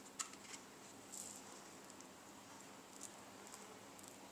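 A few faint, light ticks and a brief rustle of handling: sweet pea seeds being tipped from a paper packet into a hand and set down on a damp paper towel in a plastic tray.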